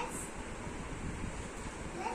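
Steady rushing noise with no distinct events, like air or wind noise on the microphone.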